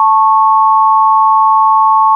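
Two pure sine tones, 880 Hz and 1100 Hz, sounding together steadily as a just major third tuned to the exact 5:4 ratio of the 4th and 5th harmonics.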